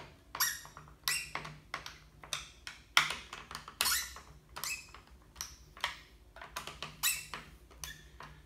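Screwdriver tightening the clamp screws on a Stihl FS 45 string trimmer's shaft housing: a run of short squeaks and clicks, about two a second, as each turn of the screw is made.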